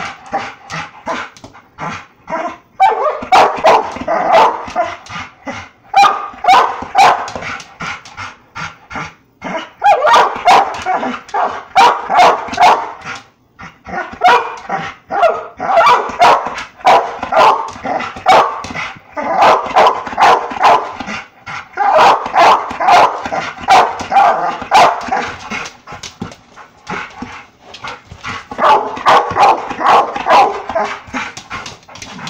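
A pit bull barking rapidly and repeatedly at a laser pointer dot, in bouts of a few seconds broken by short pauses.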